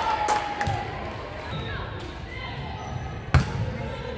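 A volleyball bouncing on a hardwood gym floor: a few light bounces early, then one sharp, loud bounce a little past three seconds in, echoing in the gym. Voices chatter in the background.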